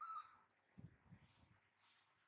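A baby macaque gives one brief, faint squeak, followed by soft low rustles and bumps from hands handling it on a cushion.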